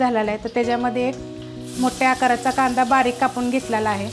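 Hot oil sizzling in a kadhai, getting louder and brighter about a second and a half in as chopped onion goes into the oil with the frying garlic. An instrumental melody plays over it throughout.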